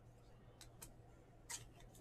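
Near silence with a few faint clicks as glossy trading cards are shuffled between the hands, one card slid behind the next.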